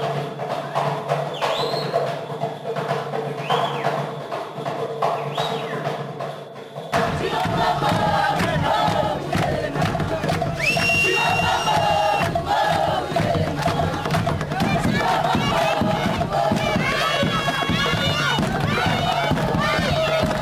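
Dance music with rising shouts over it, then, after a cut about seven seconds in, a crowd of onlookers cheering and shouting around dancers, with one long shrill call near the middle.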